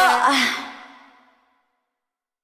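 The end of a pop song: a last short voice note and its echo die away, fading to silence about a second in.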